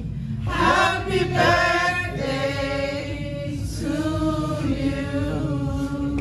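Music: a choir singing long held chords, a slow vocal song about giving thanks.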